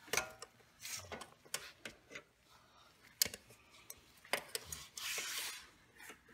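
Scattered small metallic clicks and light scraping of needle-nose pliers working at a bent cotter pin on a pocket bike's rear brake rod, with a brief soft rustle near the end.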